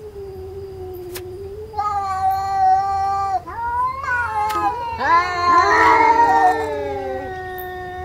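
Two cartoon cats caterwauling in a drawn-out duet of long yowls. A low held yowl runs underneath, a higher one joins about two seconds in, and from about five seconds in the voices overlap and slide up and down, at their loudest near the middle.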